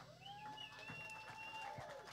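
A near-silent pause in a live rock band's song: a faint steady tone, rising slightly at its start, is held through it, with a second, higher faint tone for about a second in the middle.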